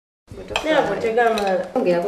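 Speech starts suddenly out of silence about a quarter second in, over a kitchen knife tapping a few times on a wooden cutting board as tomatoes are sliced.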